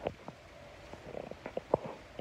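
Handling noise: a phone microphone bumping and rubbing against fabric as a pillow is pressed up to it. It comes as irregular soft knocks and rustles, with the loudest knock near the end.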